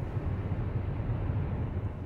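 Steady low rumble of a car driving, heard from inside the cabin: engine and tyre noise on the road.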